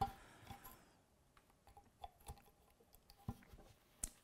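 Faint handling noise with a few small clicks as a small multi-pin wire connector is pushed into the socket on an audio amplifier.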